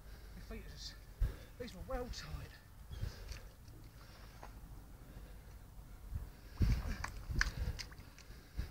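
Boots squelching and sucking through deep, wet mud, step by step, with a few low thumps. A brief muffled voice or grunt comes about two seconds in.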